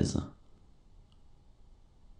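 A voice finishing a spoken word, then faint room tone with a single faint click about a second in.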